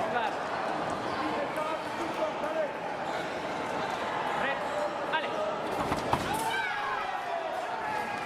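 Fencers' shoes squeaking on the piste, with a few sharp stamps about five to six seconds in, over a steady hubbub of voices in a large hall.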